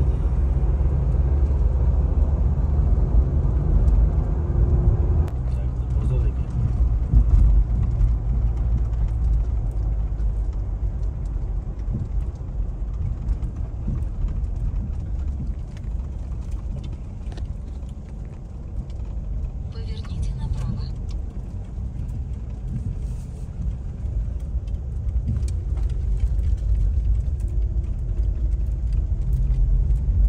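Road and engine noise inside a moving car's cabin: a steady low rumble that eases for a few seconds past the middle and builds again near the end.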